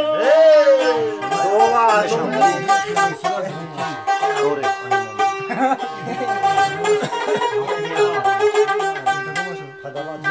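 A man's sung phrase ends with a falling glide in the first second or two, then a long-necked plucked lute plays an instrumental passage of quick plucked notes over a steady held drone note.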